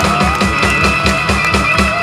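Live rock band playing loud: electric guitars, Hammond organ and a drum kit keeping a steady driving beat, with a note bending upward near the start.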